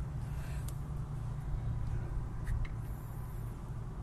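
A steady low rumble of background noise with a few faint, light clicks scattered through it.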